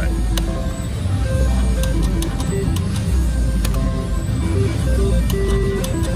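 Casino floor sound: loud background music with short electronic slot-machine tones and scattered sharp clicks, as a three-reel slot machine is spun.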